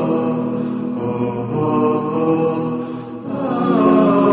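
A solo voice chanting slow, drawn-out melodic phrases, its held notes bending and ornamented in pitch. A short break comes about three seconds in before the next phrase begins.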